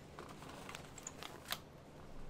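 A few faint, sharp clicks, about four, the loudest about one and a half seconds in, over a low room hum: typical of a computer mouse being clicked while the video player's sound fails to come through.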